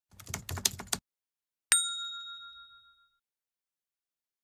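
Intro sound effect: a quick run of light clicks, like typing, for about a second, then a single bright chime ding that rings out and fades over about a second and a half.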